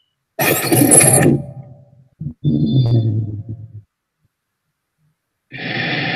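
A short sound-effect sting of a news channel's logo intro, a burst with high sweeping whooshes lasting under a second, played back over a screen share; a short laugh follows, and near the end a steady rushing noise starts as the news footage's own audio begins.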